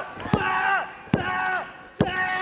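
Referee's hand slapping the ring mat in a pinfall count, three slaps about a second apart with the last right at the end. After each slap the crowd shouts the count together.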